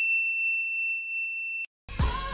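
A single bell-like ding sound effect: one sharp strike that rings on as one steady high tone, then cuts off suddenly near the end. Pop music with singing comes in just after.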